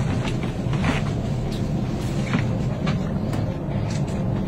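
Steady low drone of an airliner cabin in flight, with a few faint rustles and clicks.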